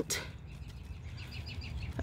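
Faint bird chirping in the background, a quick run of small high notes repeated evenly, over a low steady outdoor hum.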